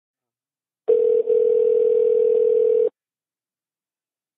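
Telephone ringback tone heard down the phone line: one steady ring about two seconds long, starting about a second in, with a brief dropout just after it starts. The call is ringing unanswered before it goes to voicemail.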